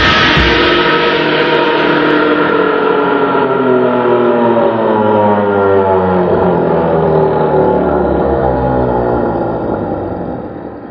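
A drum kit's crash and the ringing of its cymbals, played back in slow motion: after a last hit at the start, the cymbal wash stretches into a long ringing drone whose tones slowly fall in pitch, fading near the end.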